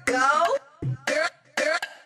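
Short, chopped vocal snippets from a house music track, three or four brief phrases separated by silences, with no beat or bass under them.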